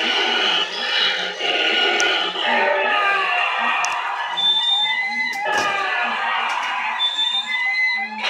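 Cryo Chamber Corpse animatronic Halloween prop playing its built-in soundtrack, a ghoulish voice over sci-fi sound effects. A short two-note electronic beep sounds twice, once about halfway through and again near the end.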